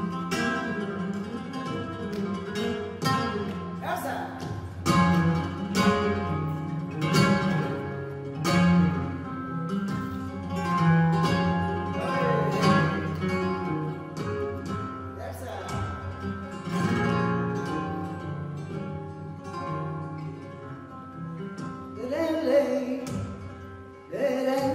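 Flamenco guitar playing a soleá, with plucked notes and chords struck in a recurring pattern; a woman's flamenco singing voice comes in near the end.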